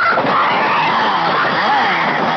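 Sudden loud screeching din from a horror film soundtrack: many wavering shrieks layered over harsh noise, cutting in abruptly and holding steady.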